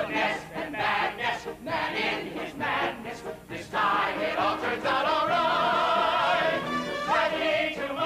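A Broadway musical ensemble singing with a pit orchestra. Quick, choppy sung lines come first; from about four seconds in, the full cast holds long notes with vibrato, building to the number's closing chord.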